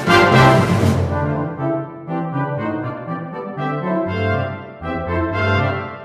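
Brass band music played by computer-rendered virtual instruments. A loud full-band passage falls away about a second in to a softer, thinner stretch of sustained brass notes, and the full band comes back in at the very end.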